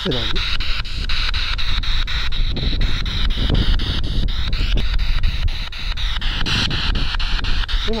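Two spirit boxes sweeping through radio stations. A loud hiss of static is broken by rapid clicks, about five a second, as they step from frequency to frequency, with brief snatches of broadcast voices.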